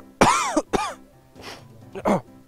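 Two loud meow-like calls, each rising then falling in pitch, the second shorter. They come just after a cat has been called with 'pisi pisi'.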